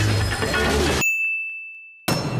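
Loud, busy commercial audio cuts off about a second in, and a single bell ding sound effect, the 'sin' ding, rings on one steady high tone and fades away.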